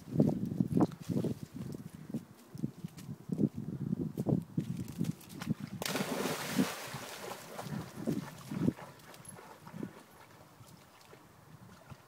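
A dog leaps into a river about halfway through: a sudden big splash of water lasting over a second. Before it, irregular low scuffing thumps; after it, the sound fades to faint water noise as the dog swims.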